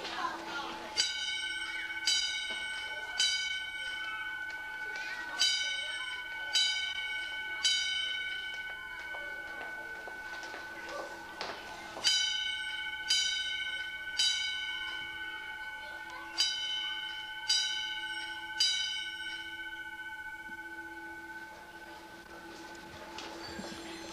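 School fire alarm bell sounding in groups of three strokes about a second apart, with a pause of several seconds between groups and the ringing carrying on between strokes. This signals the building evacuation.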